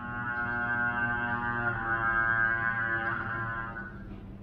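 Solo trumpet playing two long held notes, the second starting a little before halfway through and dying away just before the end.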